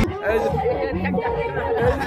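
Several men's voices chattering close by, more than one person talking at once.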